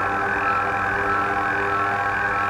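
Experimental drone music: a sustained chord of several steady, buzzy pitched tones held over a low droning hum.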